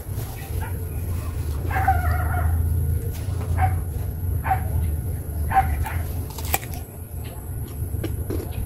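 A dog barking in the background: one drawn-out bark about two seconds in, then three short barks roughly a second apart, over a steady low rumble. A sharp click comes near the end.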